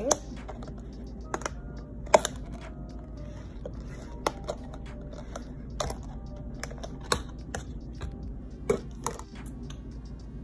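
Clear plastic lid being pried off a round plastic takeout container: scattered sharp plastic clicks and cracks, about eight of them, the loudest about two seconds in.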